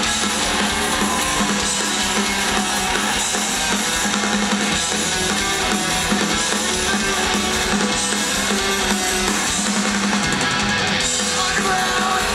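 Punk rock band playing live through a PA, heard from within the crowd: loud distorted electric guitars, bass and drum kit, in an instrumental passage with no vocals.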